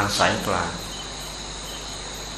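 Steady, high-pitched chirring of crickets behind a pause in a man's talk; his voice ends a phrase in the first second.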